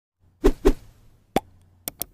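Logo-animation sound effects: two quick pops, a third sharper pop about a second in, then a pair of quick clicks near the end like a subscribe-button click.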